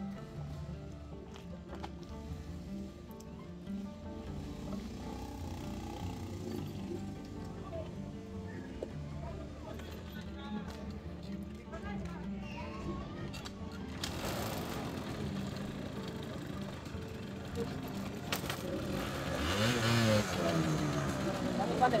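Background music, then about two-thirds of the way in a small motor scooter's engine starts running and is revved up and down, growing louder near the end.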